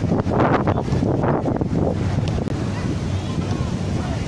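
Wind rumbling on the microphone at a football pitch, with voices shouting in the background. The sound cuts out for an instant about two and a half seconds in.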